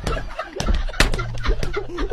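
A man's hysterical laughter in short, rapid, high-pitched cackles, with a few sharp knocks among them.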